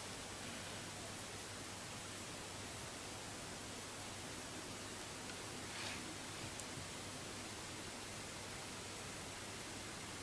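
Steady faint hiss of room tone and microphone noise, with one brief soft rustle about six seconds in.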